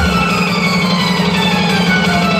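Loud music from a band's truck-mounted sound-system rig: the beat drops out and a single steady low bass note is held.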